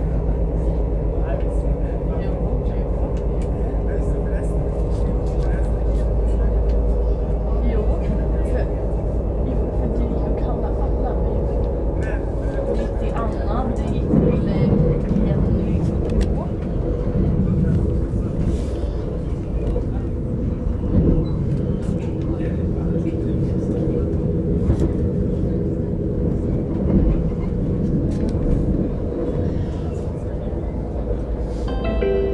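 Commuter train running along the track, heard from inside the carriage: a steady low rumble of wheels and running gear with a faint hum and scattered clicks, growing louder for a moment about halfway through.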